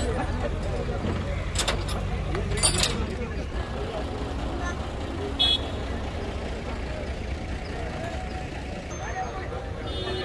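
A lorry's engine running steadily at idle, under a background of crowd voices. A few sharp knocks come about two to three seconds in, and a short high-pitched sound about halfway through.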